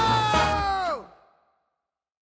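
The last held note of a children's cartoon theme tune over its bass and beat, sliding down in pitch and fading out about a second in; then silence.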